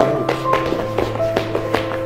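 A small dog's paws and claws pattering in light, quick, uneven taps on a wooden floor as it trots, over background music.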